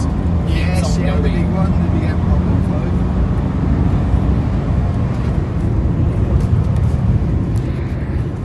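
Jaguar XJ's engine and road noise heard from inside the cabin as the car is driven hard, a steady loud hum with a held engine note for the first few seconds.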